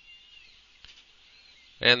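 Faint whine of a CNC machine's stepper motors as they drive along a curved toolpath, the pitch wavering up and down as the speed changes. A man starts speaking near the end.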